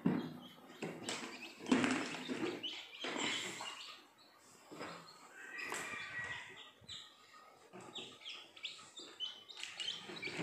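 Newly hatched chicken chicks peeping inside a plastic-box incubator: a run of short, high, falling cheeps, thickest in the second half. Early on there are bumps and rustles of the plastic box and its cloth cover being handled.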